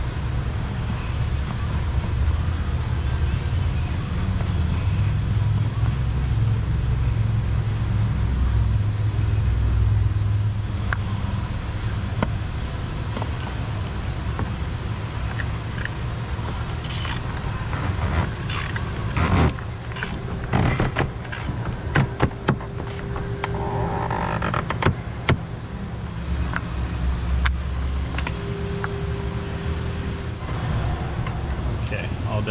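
Sharp clicks and metal knocks of a socket wrench on an extension working the fuel filter housing cap of a Cummins diesel, busiest in the second half, with a few short squeaks near the end. A steady low rumble runs underneath.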